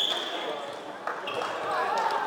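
Floorball referee's whistle: a short blast right at the start and a second shorter one just after a second in, over players' shoes squeaking and sticks and ball clattering on the court, with voices echoing in a large hall.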